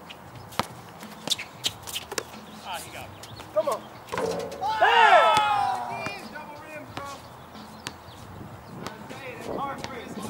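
Basketball bouncing on an outdoor hard court in a few sharp, irregular knocks, then a man's loud shout with a rising and falling pitch about four to six seconds in, and players calling out near the end.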